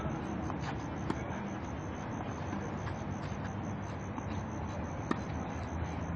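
Tennis ball struck by rackets during a rally on a clay court: a few sharp pops several seconds apart, the loudest about a second in and near five seconds, over a steady outdoor background hum.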